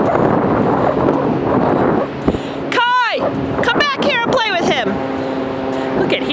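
Steady rushing noise, then a short high-pitched squeal about three seconds in and a quick run of high squealing calls a moment later.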